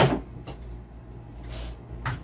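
Rummaging through a wooden desk: a sharp knock right at the start, a faint click, then a short rustle about a second and a half in.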